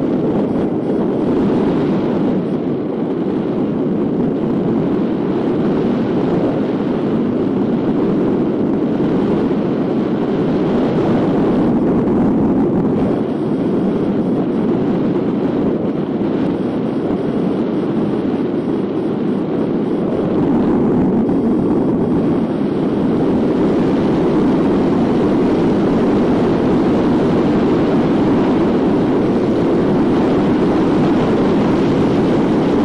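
Wind rushing over the microphone of a camera mounted on a hang glider in unpowered flight at about 40–50 km/h airspeed: a steady, loud rush that grows a little louder in the last third as the glider speeds up.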